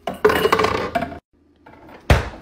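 Glass facial ice globes clinking and knocking against each other and a plastic freezer bin as they are set down, a short burst of clattering lasting about a second.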